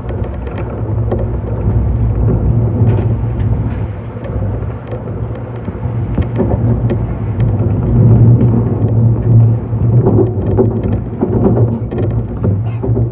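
Meitetsu 6500 series electric train running, heard from the driver's cab: a steady rumble with a low hum and scattered sharp clicks from the wheels over the track. It grows louder about eight seconds in.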